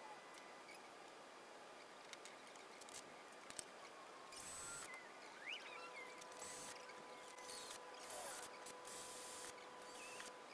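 Faint short bursts of a Ryobi cordless drill working on a small aluminium part, several in a row from about four seconds in, after a few light clicks. A faint steady hum runs under the second half.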